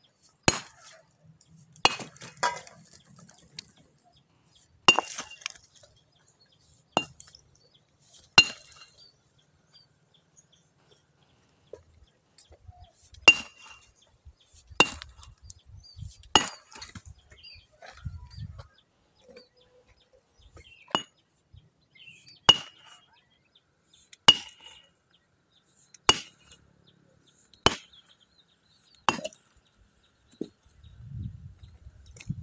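A small sledgehammer strikes a large stone again and again, breaking it up. Each blow is a sharp metallic clink with a short ring. There are about fifteen blows, a second or two apart, with a pause of a few seconds a third of the way in.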